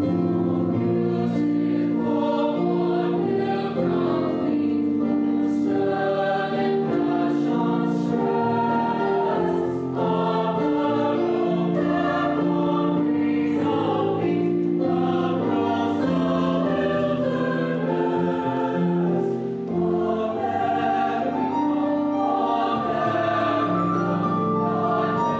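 A mixed choir of teenage boys and girls singing together, in long sustained chords.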